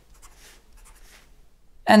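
Fine-tip permanent marker drawing on paper: a faint series of short scratching strokes.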